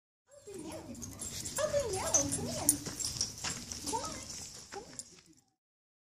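Small dog making short whines that rise and fall in pitch, mixed with a woman's speech; the sound cuts off abruptly about five seconds in.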